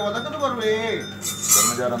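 A man's voice speaking in a drawn-out, sing-song way, mixed with metal jingling and clinking; about a second and a half in comes a short burst of bright jingling, and a short exclaimed "vah!" at the very end.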